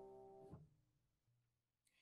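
Faint tail of a sustained piano chord dying away, cut off abruptly about half a second in, followed by silence.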